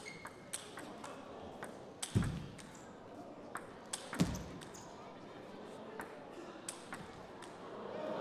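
Table tennis ball clicking off the rackets and table during a rally, with two heavier thuds about two and four seconds in.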